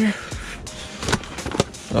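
Rustling and shifting of boxes and plastic-bagged trash in a dumpster as someone steps in among them, with a few sharp knocks.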